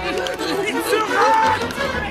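Film soundtrack of a commotion: several voices calling out and chattering over each other, with music running underneath and scattered clatter.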